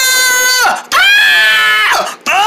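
A person screaming in a high voice: two long, held screams, the first dropping off just under a second in and the second starting right after.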